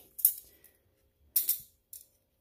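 Metal utensils of a Swedish Army mess kit set (knife, fork and spoon) clinking against each other as they are slotted back together: two sharp clinks about a second apart, then a faint tap.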